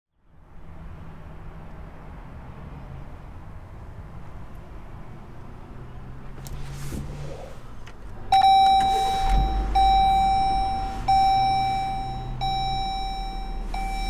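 2022 Jeep Grand Cherokee started with the push button: about eight seconds in, a dashboard chime begins and sounds five times, about every second and a half, and a second later the engine catches and runs at a low idle under the chimes. Before that there is only a steady faint cabin hiss.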